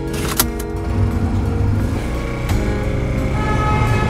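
Film-trailer music of sustained tones over a steady low rumble, cut by two sharp hits, one just after the start and one about halfway through.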